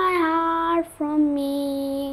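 A boy singing a hymn unaccompanied: a sung note, a brief break for breath, then a long steady held note.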